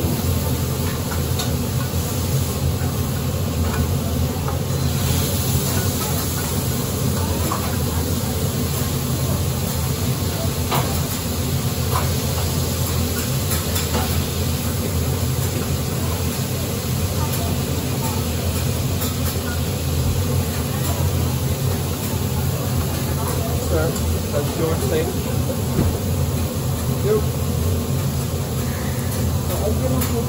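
Steak and vegetables sizzling on a teppanyaki hotplate, with occasional clicks and scrapes of a metal spatula on the griddle, over a steady low rumble.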